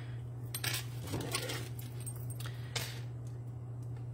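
Small craft scissors trimming a paper piece: a few short metallic snips and clicks, spaced about a second apart, over a steady low hum.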